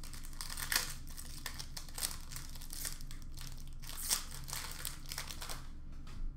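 Crinkling of a trading-card pack's foil wrapper as it is opened and handled, in a string of short rustles, with cards slid in the hand.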